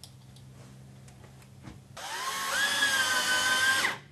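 Cordless drill with a Phillips bit driving a screw through a back wall clip into the wall. After a couple of seconds of small handling clicks, the motor starts about halfway through with a short rising whine, runs steadily for about two seconds, then stops.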